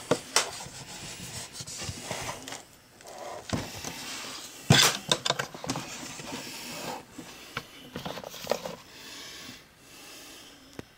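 Scattered clicks and knocks from the latched case of a vacuum tube tester being opened and its lid lifted. The loudest knock comes about halfway through.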